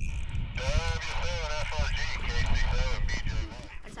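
A high-pitched voice making wordless, rising-and-falling sounds for about two seconds, starting about half a second in, over a steady low wind rumble on the microphone.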